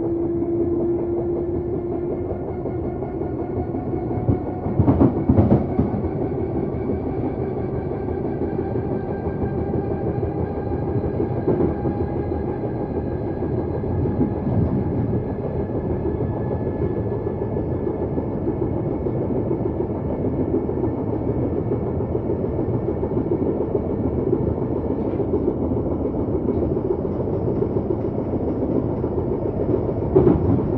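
A London Underground 1972 Stock train heard from inside the passenger car while running between stations: a steady rumble of wheels on track with a faint motor whine that rises slowly in pitch. About five seconds in there is a brief, louder burst of clattering from the wheels.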